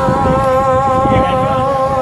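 A single long, steady tone with a clear pitch, wavering slightly near the end, over low crowd noise.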